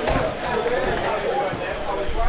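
Indistinct chatter of a group of people talking at once in the background, no single voice standing out.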